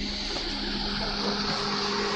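Vehicle and traffic noise picked up by a police body camera's microphone at a roadside at night: a steady rush of engine and road noise with a low steady hum underneath.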